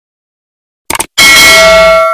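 Silence, then a short click a little under a second in, followed by a loud bell ring with several steady tones that rings on and slowly fades. This is the tap-and-bell sound effect of a subscribe-and-notification animation.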